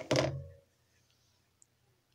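A single sharp thump right at the start, dying away within about half a second with a brief faint ringing, then quiet room tone.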